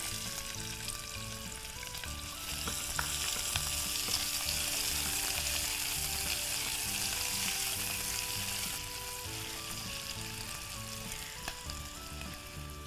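Chopped onion sizzling as it hits hot oil and ghee with whole spices in a pressure cooker, and is stirred with a spatula. The sizzle grows louder a couple of seconds in and eases off again at about nine seconds.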